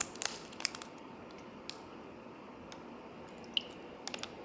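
Plastic screw cap on a jelly-drink spout pouch being twisted open: a quick run of sharp plastic clicks and crackles in the first second, one more crackle a little later, and a short high squeak near the end as the pouch is squeezed.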